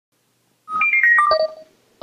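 Short electronic chime: a quick run of about six clear notes that jump up and then step down in pitch, lasting about a second.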